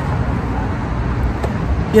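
Steady road traffic noise: a low rumble of passing cars.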